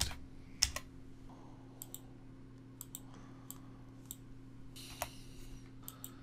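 Sparse keystrokes on a computer keyboard, about ten separate clicks, some in quick pairs, over a faint steady low hum.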